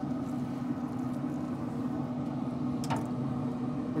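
Steady hum of a Traeger pellet grill's fan running while the grill holds temperature, with a single sharp click about three seconds in.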